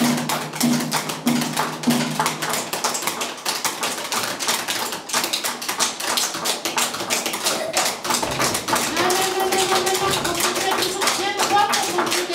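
Many sticks tapping irregularly on folding chairs, a scattered clatter that runs on throughout. A regular low beat stops about two seconds in, and a held voice-like tone comes in near the end.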